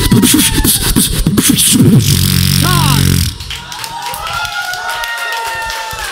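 Human beatboxing: quick, rhythmic drum-like clicks and kicks over bass, ending a little over a second later on a long held bass note that cuts off about halfway through. After it, audience voices call out and whoop in reaction.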